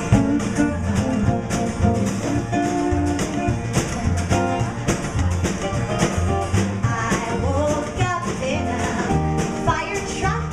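Live band playing a song: two strummed acoustic guitars over a steady drum-kit beat, with a woman singing at the microphone in the second half.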